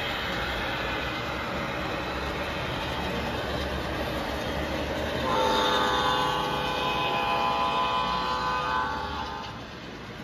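G-scale model intermodal train rolling past, its wheels and motors giving a steady rumble. About halfway through, the model diesel locomotive sounds its electronic multi-note horn, held for about four seconds.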